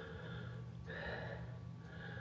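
Quiet pause: a low steady hum of room tone, with a few soft breaths near the microphone.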